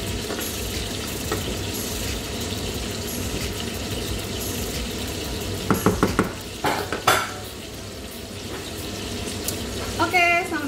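Pasta sizzling in a stainless steel pan while a wooden spatula stirs it, with a quick run of knocks of the spatula against the pan a little past halfway.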